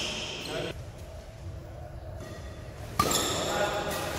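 A badminton racket strikes the shuttlecock once about three seconds in, a sharp crack that rings on in a large hall.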